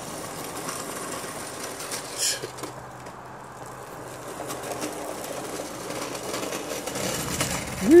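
Small wheels of a loaded hand truck rolling over a concrete driveway, fading as it moves away and growing louder again as it comes back near the end, with one short click a couple of seconds in.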